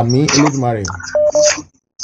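A few words of speech, then a few brief telephone beeps, steady keypad-like tones, heard over the phone line just after a second in.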